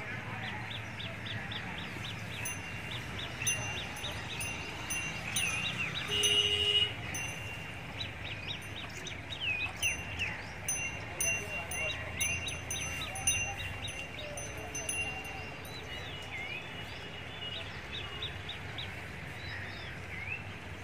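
Birds chirping in quick runs of short rising and falling notes, with brief held whistles, loudest about six seconds in.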